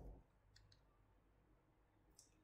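Near silence: room tone, with two faint, short clicks close together a little over half a second in.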